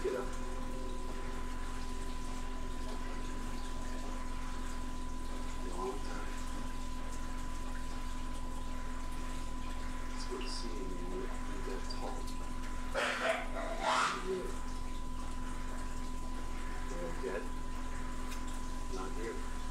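Steady electrical hum and hiss with a faint high whine held on one pitch. A few brief faint noises come about 13 and 14 seconds in.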